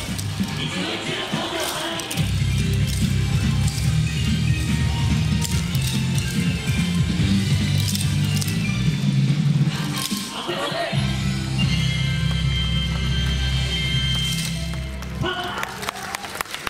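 Yosakoi dance music played loud over speakers, with a heavy bass line and voices on the track, and the sharp clacks of the dancers' wooden naruko clappers. The bass drops out briefly about two-thirds of the way through and the music stops shortly before the end.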